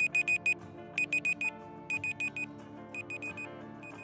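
Electronic alarm-clock beeping used as a countdown-timer sound effect: quick groups of four high beeps, about one group a second, with a single beep near the end. Soft background music plays under it.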